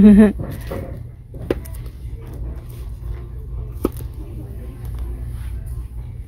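A woman's short laugh, then quiet shop background with a low steady hum, broken by two sharp clicks about a second and a half in and near four seconds.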